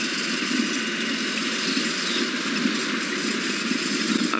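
Open safari vehicle's engine running steadily as it drives along a dirt track.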